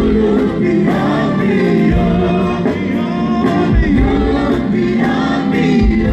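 Live gospel worship music: a group of singers in harmony, backed by an electronic keyboard, with a low beat recurring every second or two.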